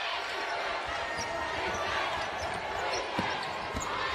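Arena crowd noise with a basketball bouncing on the hardwood court, a couple of dribble thuds near the end.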